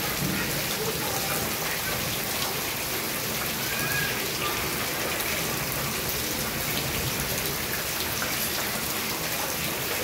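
Heavy rain falling steadily: a dense, even hiss with many individual drops ticking close by.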